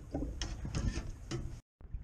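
Faint, irregular light clicks and knocks over a low rumble. The sound cuts out completely for a moment near the end.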